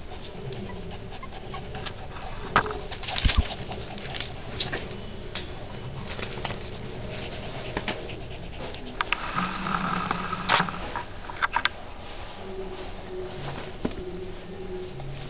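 A very young puppy making soft whimpers and grunts as it struggles to crawl and stand. Scattered light clicks and scrapes, from its paws and claws on the wooden floor, run through it, with a short louder cluster about three seconds in.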